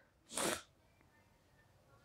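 A single short, sharp sniff through the nose, about a third of a second long, a little under half a second in; otherwise near silence.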